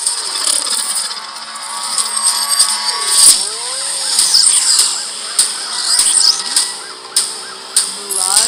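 Action-film trailer soundtrack: car engines revving and tyres squealing, mixed with gliding mechanical sound effects. There is a loud hit about three seconds in.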